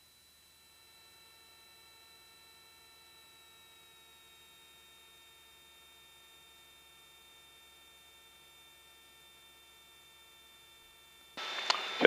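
Near silence with only faint steady high tones. Near the end, a loud hiss comes on abruptly as the radio transmitter is keyed for a call.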